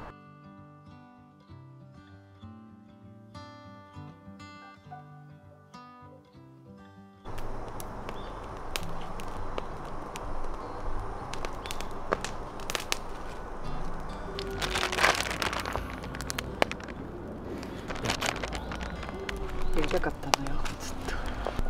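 Soft instrumental music for about the first seven seconds, cut off suddenly. Then a wood campfire crackling, with scattered sharp pops and snaps from burning split firewood, and a brief louder rustle about halfway through.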